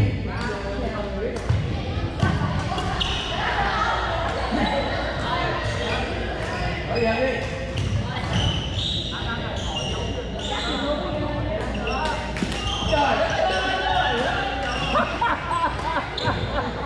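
Pickleball paddles striking plastic balls, with sharp irregular pops and the balls bouncing on the hardwood floor. Many players' voices chatter underneath, all echoing around a large gym.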